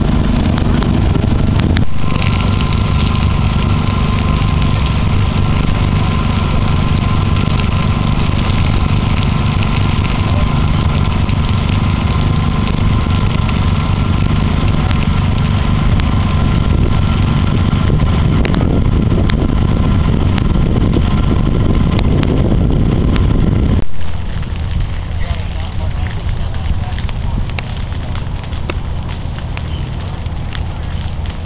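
Loud low rumble with scattered sharp crackles from burning prairie grass, with a faint steady whine underneath; about 24 seconds in the sound cuts to a lighter crackling of low flames.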